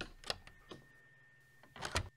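Sound-effects prop door being worked for a radio play: a few faint wooden clicks of the latch and frame, then a louder short clatter near the end.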